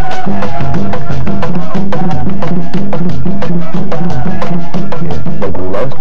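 Currulao music from a traditional Pacific Colombian ensemble: quick, dense drumming over a steady low bass pattern, with women's voices singing.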